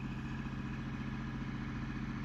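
Kubota L2501 tractor's three-cylinder diesel engine running steadily at a distance.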